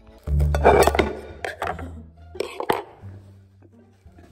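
A knife and fork clattering against a ceramic plate in several sharp clinks over the first three seconds, with background music carrying a steady low bass underneath.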